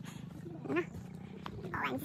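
Faint voices of people walking in a group, with two short calls about a second apart, over a steady low background rumble.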